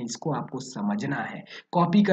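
Only speech: a man narrating in Hindi, with a brief pause near the end.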